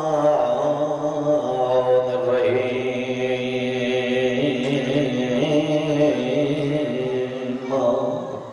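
A man's voice chanting a melodic majlis recitation into a microphone, holding long drawn-out notes that shift slowly in pitch, heard through a PA with echo; the line ends just before the end.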